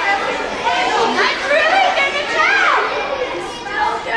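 Children and adults talking over one another in a school gym. One voice rises and falls sharply in pitch about two and a half seconds in.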